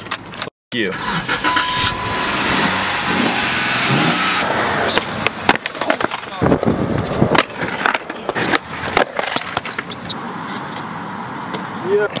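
Wind and road noise in an open-top car on the move, then skateboard wheels rolling on concrete with sharp clacks of the board's tail and deck hitting the ground.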